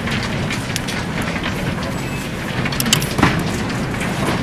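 Airport baggage carousel running with a steady low rumble, with a couple of sharp clacks about three seconds in.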